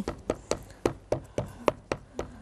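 A black VersaFine Clair ink pad being tapped over and over onto a large cling-mounted rubber stamp on an acrylic block, inking it: a run of short, sharp taps, about four a second.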